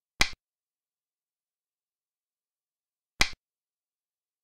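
Two sharp clicks, about three seconds apart, of a xiangqi piece being set down on the board. Each click marks a move in the animated game.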